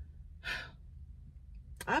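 A woman's single short, breathy sigh as she holds back tears, followed near the end by the start of her speech.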